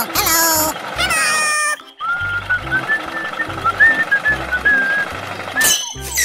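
Background music with a whistled-sounding melody over a repeating bass beat. In the first second and a half, cartoon sound effects slide down in pitch.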